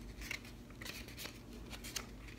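Pages of a book being turned: faint paper rustling with a few light, crisp clicks.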